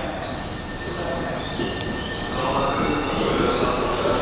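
Tobu 30000 series electric train moving alongside the platform, its running noise growing louder, with a high steady whine over the rail noise.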